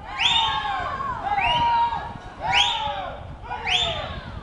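High-pitched shouts of encouragement from people at the poolside for the swimmers, repeated about once a second.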